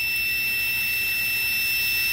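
Multimeter continuity buzzer sounding one steady high tone, over a steady hiss of compressed air flowing into the boost leak tester. The buzzer means the normally closed pressure switch is still closed as the pressure climbs toward 20 PSI.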